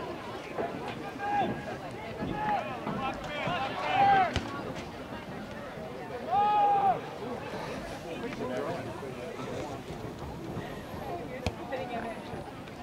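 Shouting voices at a soccer game: a few short calls, the loudest about four seconds in, then a longer held shout between six and seven seconds, over a low murmur of voices.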